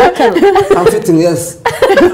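Talk-show conversation with a woman laughing: a loud voice throughout, breaking near the end into a run of short repeated laughs.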